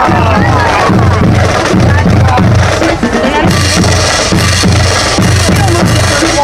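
Marching drum line playing: bass drums beating a steady pulse about twice a second, with snare drums rattling over it more densely in the second half.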